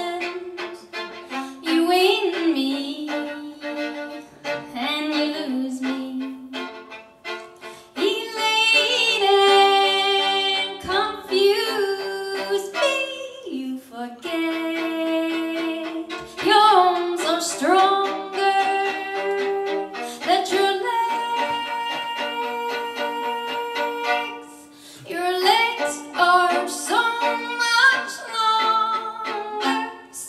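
Solo violin played with a bow: long held notes, several slid up into pitch, in phrases with short breaks between them.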